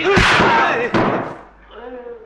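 Film fight-scene sound: men shouting and yelling over sharp punch and kick impact effects, with a heavy hit right at the start and another about a second in. The racket cuts off about a second and a half in.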